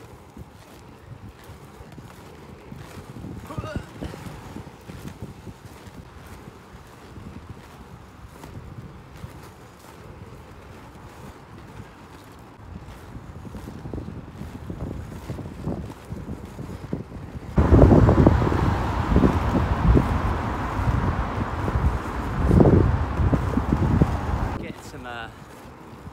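Wind buffeting a phone microphone over the rolling noise of skateboard wheels on pavement; about two-thirds of the way in a loud, gusty rumble sets in suddenly and lasts about seven seconds before dropping back.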